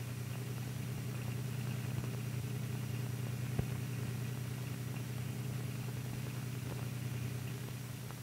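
A steady, low, engine-like hum with one short click about three and a half seconds in.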